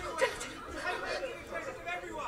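Film dialogue playing back faintly through a speaker: voices giving orders to search, with more than one voice speaking.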